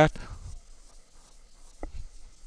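The last word of a man's lecture voice trails off at the start, then quiet room tone with faint scratching from a stylus on a tablet screen as pen ink is erased, and a short faint blip near the end.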